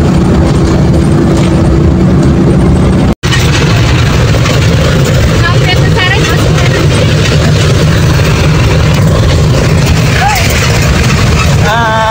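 Steady engine and road drone inside a moving coach bus, with a low hum and a level tone. About three seconds in it cuts to the engine and road noise inside a moving jeepney, which is hissier and has no steady tone, with faint voices now and then.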